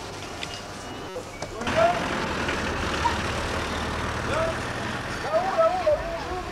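Railway platform noise beside a standing train: a steady low hum and rushing noise with indistinct voices. A brief dropout comes about a second in, after which the noise is louder.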